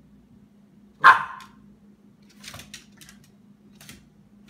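A Boston terrier gives one sharp, loud bark about a second in while play-wrestling, followed by a few faint short clicks and scuffles from the dogs.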